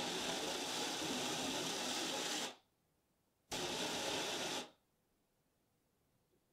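Garden hose spraying water at close range onto the camera: a steady hiss that cuts off suddenly about two and a half seconds in, comes back for about a second, then stops.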